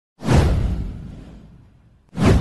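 A whoosh sound effect from an intro animation, with a deep low boom under it: it hits suddenly a fraction of a second in and fades away over about a second and a half.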